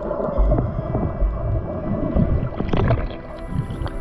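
Underwater sound heard through a GoPro's waterproof housing: low rumbles and thumps under a steady hum, with short squeaky gliding tones, the loudest rising high about three seconds in.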